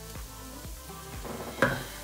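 Background music with a steady beat about twice a second, over a faint sizzle from the frying pan. A single sharp knock sounds near the end.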